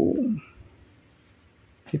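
A man's voice trailing off on a drawn-out word, then near silence with faint room tone.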